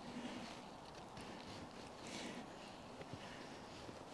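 Knife blade shaving down a split of hard, dry maple to raise feather-stick curls: faint scraping strokes about two seconds apart. The carver thinks the outer wood is old and dry, which makes it hard going.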